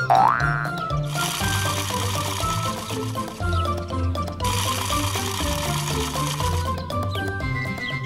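Upbeat children's cartoon background music with a steady beat. A short rising, whistle-like cartoon sound effect plays right at the start.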